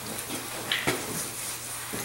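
Wet rag rubbing diluted muriatic acid across the face of a cast glass-fiber-reinforced concrete piece: a soft, steady scrubbing. A couple of faint knocks come a little under a second in. The acid is stripping the surface wax to open up the concrete.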